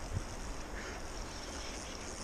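Steady rush of a flowing river's current over a riffle, with some wind on the microphone.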